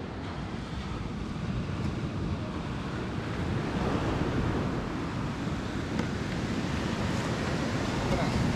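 Sea surf breaking on the beach, heard as a steady wash of noise mixed with wind on the microphone.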